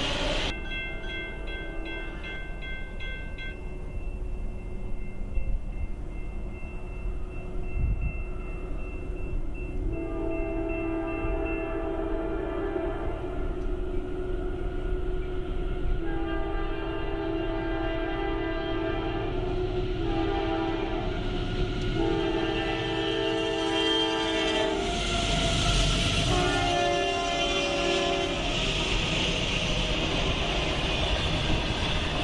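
Diesel freight locomotive's multi-chime air horn sounding a series of long and shorter blasts, as trains do approaching a grade crossing, over a steady low rumble of train noise. Near the end the rush and rumble of the arriving intermodal train's cars grow louder under the horn.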